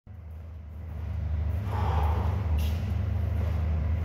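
A steady low hum that rises in level over the first second and a half, with a faint murmur about two seconds in and a brief click a little later.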